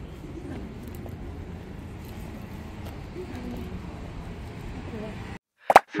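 Street ambience: a steady low rumble with faint voices of passers-by. It cuts off abruptly near the end, followed by a brief sharp sound.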